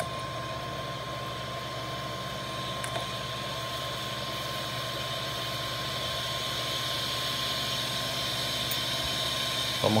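Steady machine hum and hiss, like a running fan, with a constant high-pitched whine, growing slightly louder over the seconds; a faint click about three seconds in.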